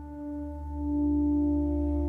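Background music: a sustained low drone with held tones above it, swelling slightly about a second in.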